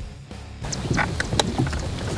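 Soft background music, then about half a second in the sound cuts to the deck of a fishing boat on open water: steady wind and water noise with several sharp clicks and knocks.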